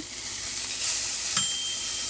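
A freshly microwaved hamburger patty sizzling steadily on the hot base of a Range Mate microwave cooker pan, with one short ringing clink about one and a half seconds in.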